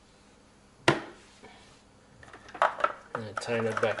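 A single sharp plastic knock about a second in, then a run of small plastic clicks and rattles as the white filter housings and connectors of a reverse osmosis water filter unit are handled and fitted. A man's voice comes in near the end.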